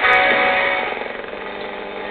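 Music from a local AM broadcast station received on a home-built crystal radio with a germanium diode, fading steadily as the tuning capacitor is turned away from the station.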